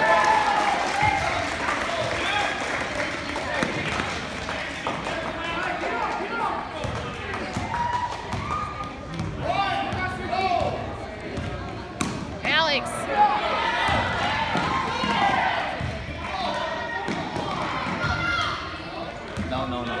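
Basketball game sound on a hardwood court: a ball dribbling and players and spectators calling out throughout, with a short high squeak about twelve seconds in.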